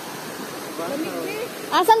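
Shallow rocky stream running over small cascades: a steady rush of water.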